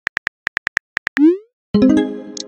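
Synthetic phone-keyboard typing clicks from a texting-story app, quick and even. A short rising bloop about 1.2 s in marks the message being sent, then a bright chime chord sounds near the end and rings out.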